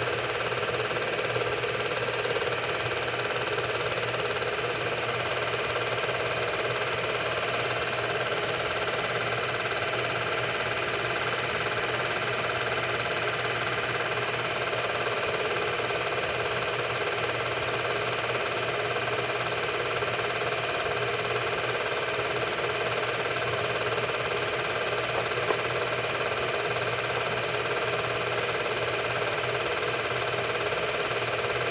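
Film projector running: a steady mechanical whir with no change throughout.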